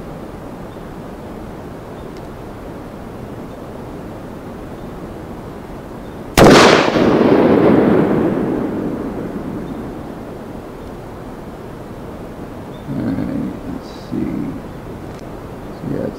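A single rifle shot from a custom .308 Winchester firing a 180-grain Flatline solid, very loud and sharp, about six seconds in. Its echo rolls on and fades over the next three to four seconds.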